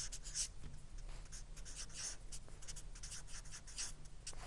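Marker pen writing on a white board: a run of faint, short, irregular strokes with brief pauses between them, over a faint steady low hum.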